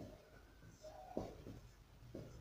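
Marker pen squeaking faintly on a whiteboard while words are written, with a short squeal a little under a second in followed by two quick strokes.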